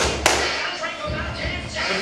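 A couple of sharp knocks right at the start as a bumper-plate-loaded barbell is gripped, with background music under it.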